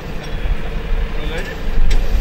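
Fire engine running steadily at idle, a low rumble with a steady hum over it, with snatches of voices and a short sharp knock near the end.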